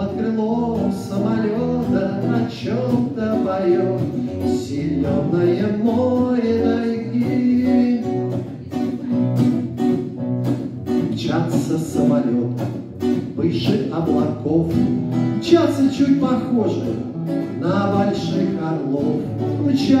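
A man singing into a microphone while strumming his acoustic guitar.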